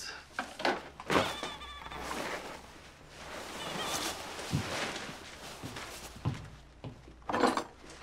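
Plastic handling noise from an inflatable vinyl doll being pulled and squeezed: rustling with short squeaks of the plastic rubbing, and a few light knocks.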